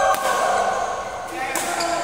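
A badminton racket strikes a shuttlecock with a sharp crack right at the start. Another sharp hit comes about a second and a half in, over a steady bed of voices and other play in the hall.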